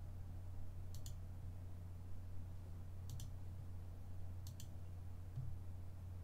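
Three computer mouse clicks, each a quick double tick of button press and release, coming about a second, three seconds and four and a half seconds in, over a low steady hum.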